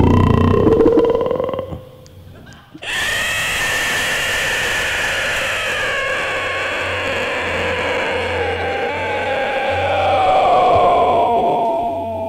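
A live band's last notes die away about two seconds in; after a short lull, the arena audience breaks into loud cheering and screaming.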